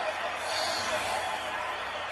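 Steady murmur of a basketball arena crowd, heard over a television broadcast, with a brief whoosh about half a second in as the replay graphic sweeps across.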